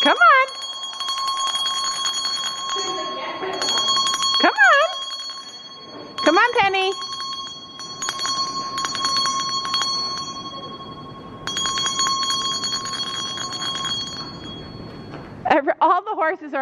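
A shrill bell, really loud, rung in rapid trills in several bursts of a few seconds each, stopping about fourteen seconds in. It is a recall signal that a young horse is being trained to come to. A high voice calls out briefly three times between the bursts.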